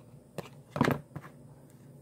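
Trading cards handled by hand: cards slid and flicked off a stack, giving a few brief clicks and rustles. The loudest comes a little under a second in.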